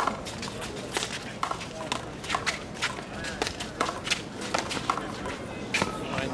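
A one-wall handball rally: a string of sharp, irregularly spaced smacks of a small rubber handball struck by gloved hands and hitting the concrete wall and court, the loudest at the start and near the end, with players' footsteps on the concrete.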